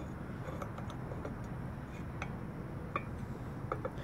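Faint, scattered clicks and light metal taps from a galvanized pipe fitting being handled and test-fitted on a steel drill press table, over a steady low background noise.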